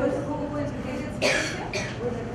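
A person coughing twice in quick succession, a little past the middle, after a brief voiced sound at the start.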